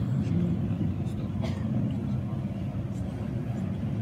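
Indistinct, faint speech over a steady low rumble, with cloth rustling and small knocks close to the microphone.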